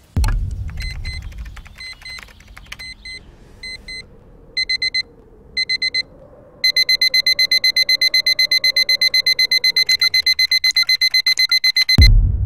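A low boom, then a digital alarm clock beeping: faint paired beeps at first, short groups of four beeps around four to six seconds in, then rapid continuous beeping, about seven a second, from about seven seconds in until another low boom at the end.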